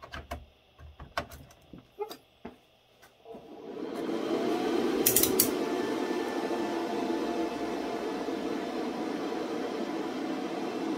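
A few clicks and knocks as a power supply is plugged into a Dell PowerEdge T420 server. About three seconds in, the server powers on by itself and its cooling fans spin up with a rising whine, then settle into a steady whir with a couple of sharp clicks about five seconds in.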